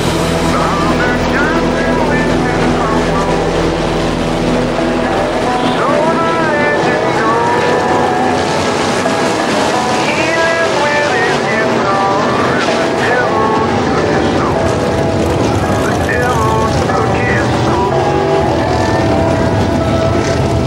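A field of RaceSaver sprint cars, small-block V8 engines, racing on a dirt oval. Their pitch rises and falls over and over as the cars lap through the turns.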